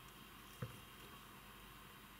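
Near silence: room tone, with one short faint click a little over half a second in.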